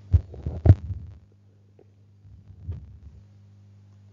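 Two dull low thumps within the first second, then a steady low electrical hum with a faint soft bump near the middle.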